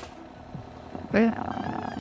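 A man's short, raspy chuckle about a second in, after a quieter first second.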